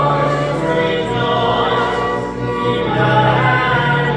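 Voices singing together in sacred church music, with held low notes sustained beneath the singing.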